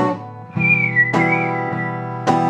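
Acoustic guitar strummed steadily, a chord about every half second, with a whistled melody line over it that comes in about half a second in and slides gently down.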